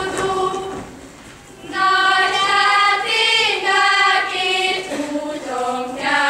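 A group of young girls singing a Hungarian folk song together. One phrase ends just under a second in, and after a short pause the next phrase comes in with long held notes.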